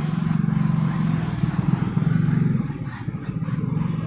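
A motor engine running, with a steady low, rapid pulse. It is loudest for the first two and a half seconds, then drops back.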